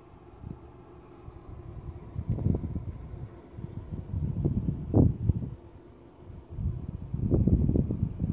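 Wind buffeting the microphone: low, rumbling gusts that swell in three surges, the strongest about five seconds in.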